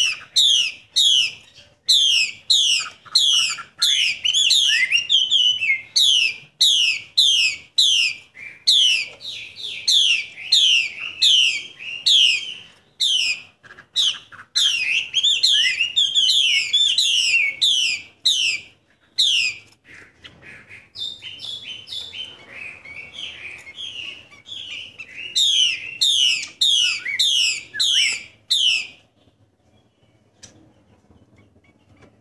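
Female Chinese hwamei calling: a long run of sharp, downward-slurred notes, about three a second, with a softer, lower twittering stretch about two-thirds through before the quick notes resume and stop just before the end. This is the female's call that keepers use to rouse male hwameis.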